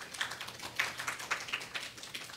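Scattered applause from a small audience, a patter of irregular claps.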